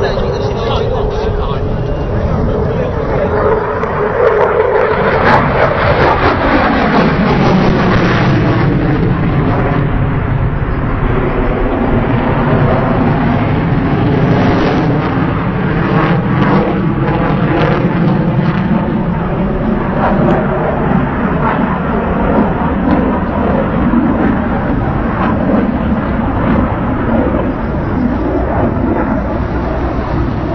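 Aircraft engine noise from an air-show display aircraft passing overhead, loud throughout. Its pitch drops between about four and eight seconds in as it goes past, then it continues as a steady drone.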